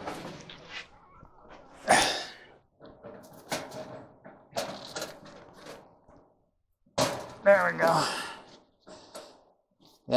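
Clicks, knocks and rattles of hands working on wires and a connector inside the opened sheet-metal cabinet of a clothes dryer, with a sharp knock about two seconds in. A short burst of mumbled voice comes around seven seconds in.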